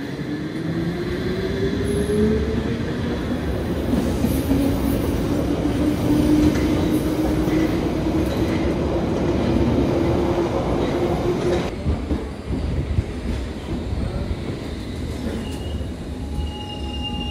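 London Underground 1973 Stock Piccadilly line train pulling away from a platform: electric traction motors whining and rising slowly in pitch as it accelerates, over the rumble and clatter of its wheels. About twelve seconds in the sound breaks off abruptly into the rumble of another Underground train, with high wheel squeal starting near the end.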